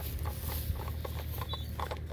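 Faint, irregular clicks and scratches from a black plastic HDPE compression pipe fitting being handled, over a low steady rumble.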